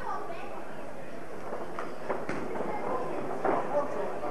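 Indistinct shouting and talk from spectators and corners at an amateur boxing bout, over a steady background hiss, with a few sharp thuds from the boxers' gloves and feet in the ring, about two seconds in and again past three seconds.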